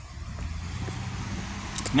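A car driving past on the road, a steady low rumble.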